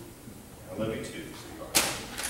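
A single sharp, loud smack about three-quarters of the way through, after some low voices.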